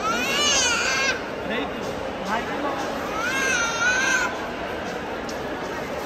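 A baby crying: two long, high wailing cries, one at the start and one about three seconds in, over the general chatter of a crowd.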